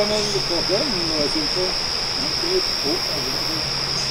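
A steady high-pitched insect drone, with brief low murmured voices early and again near three seconds.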